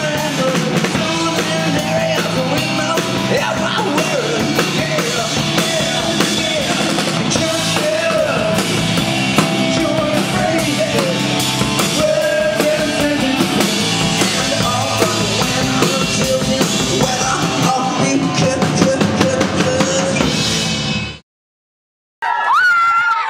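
Rock song with singing over a drum kit, playing steadily, then fading out quickly near the end into a second of silence.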